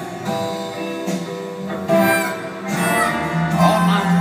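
Live instrumental passage: an acoustic guitar playing a melodic solo over a sustained orchestral string section, recorded from far back in the audience.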